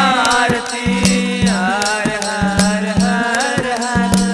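Devotional aarti bhajan music: a bending melody line over a steady low drone, with regular percussion strokes and a shaken rattle.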